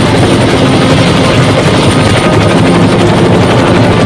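Helicopter sound effect: a loud, steady rotor chop as the helicopter flies close by.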